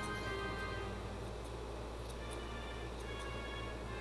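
Background music with held tones, over a few light, irregular clicks of grooming shears snipping.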